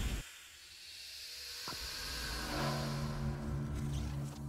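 Music-video intro sound design: a loud whoosh cuts off sharply at the start, leaving a high hiss. A low, held synth chord then swells in from about halfway through.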